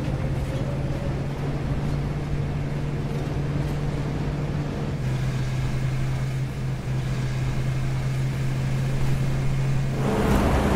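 Workshop metal lathe's electric motor and drive running steadily, a low even hum; one of its low tones drops out about halfway through.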